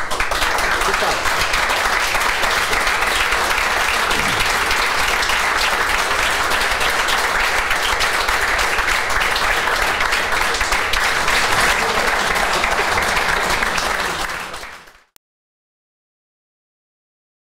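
An audience of a few dozen people applauding steadily, fading out near the end.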